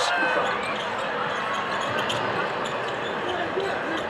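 Steady crowd noise in a basketball arena during live play, with a ball bouncing on the hardwood court.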